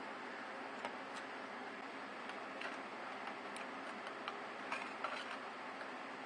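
A few sparse, light metallic clicks as needle-nose pliers crimp and fold over the cut edge of a thin steel can sheet, over a steady faint hiss.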